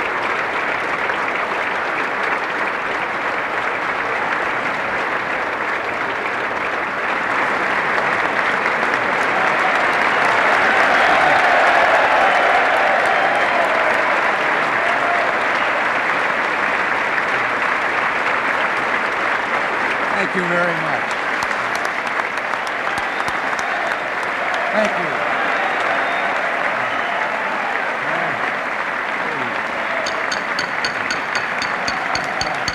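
A large audience applauding steadily, swelling to its loudest about ten to thirteen seconds in, with a few voices calling out in the crowd.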